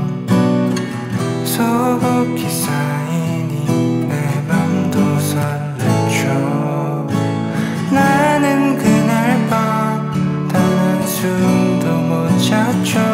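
Steel-string acoustic guitar strummed and picked in a slow folk arrangement, the chords ringing on steadily.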